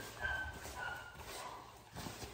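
Standard schnauzer puppy whining in several short, high whimpers, with soft thuds of footfalls on the padded floor.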